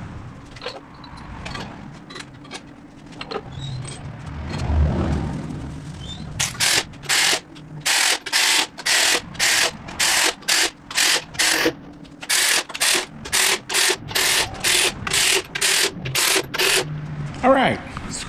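Hand ratchet running cylinder head bolts down on a V8 engine: short bursts of ratchet clicking, about two to three a second, starting about six seconds in with a brief pause midway. Before that there are only a few light clicks and knocks of tools being handled.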